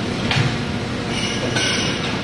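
Steady din of plastic injection molding machines and a conveyor line running. There is a short hiss about a third of a second in and a longer hiss in the second half.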